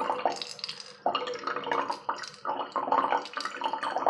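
Thin stream of water poured from a plastic bottle into the opening of an aluminium drink can, trickling and splashing inside it. The trickle is uneven, with a brief lull about a second in.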